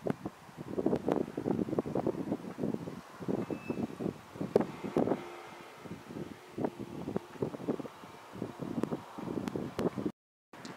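Gusty wind buffeting the camera microphone outdoors, in irregular surges with short lulls between them.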